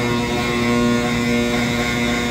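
Blower of a horizontal cement silo running with a steady humming drone, pushing cement powder by air pressure through the hose into a spreader truck.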